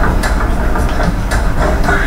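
Film soundtrack playing back from a laserdisc: a steady low rumble with sharp clacks about twice a second, like a train passing.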